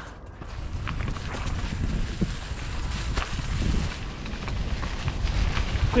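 Ragley Big Wig steel hardtail mountain bike rolling downhill over rock and dry fallen leaves: tyre noise on the leaves and trail, with many scattered knocks and rattles from the bike and a low rumble underneath.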